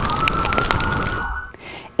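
Fire burning in an open dumpster, with a noisy rush and faint crackles, over a steady high tone that rises slightly in pitch. Both cut off about a second and a half in.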